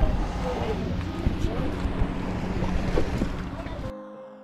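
Wind buffeting the microphone over the wash of the sea, with faint voices underneath. The sound cuts off abruptly just before the end.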